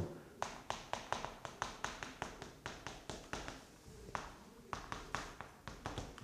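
Chalk tapping and scratching on a chalkboard as a line of text is written: a quick run of short clicks, a few a second, with a short pause partway through.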